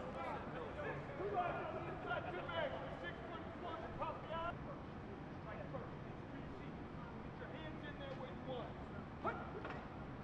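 Indistinct voices of players and coaches talking and calling out across the practice field, over a steady low hum, with one sharp smack about nine seconds in.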